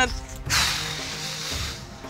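Background music with held notes, with a sudden hissing swish effect about half a second in that fades away over a second and a half.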